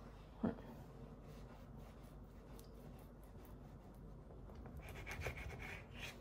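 Faint scraping of a knife cutting through a soft rolled log of cinnamon roll dough down onto the countertop, growing a little louder near the end. A brief short sound comes about half a second in.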